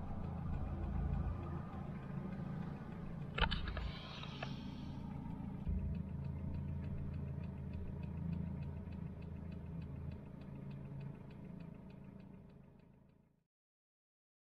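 Cabin sound of a 1992 Volvo 940 Turbo being driven: the turbocharged four-cylinder engine and road noise make a steady low hum. There is a short knock about three seconds in, then a light, rapid ticking through the middle, and the sound fades out near the end.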